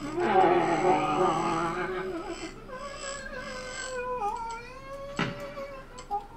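Tenor saxophone in free improvisation, playing a wavering, wailing line for about two seconds, then holding one long note that bends down in pitch and back. A sharp click sounds about five seconds in.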